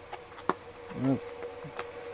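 A cardboard toy box being handled and pried open, with a sharp click about half a second in and another near the end, over a steady high-pitched hum.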